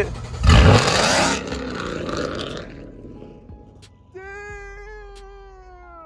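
Dodge Charger Scat Pack's 392 HEMI V8 cold-starting: a loud flare about half a second in that dies down over the next two seconds. About four seconds in, a person's long high 'oooh' holds for about two seconds and falls in pitch at the end.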